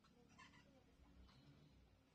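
Near silence: quiet room tone with two faint, brief sounds, about half a second in and again a second later.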